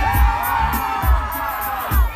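Music with a heavy bass beat under a crowd of fans screaming and cheering.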